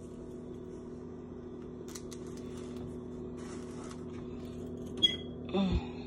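A steady electrical hum made of several even low tones, with a few short rustles and a click over it about halfway through and near the end.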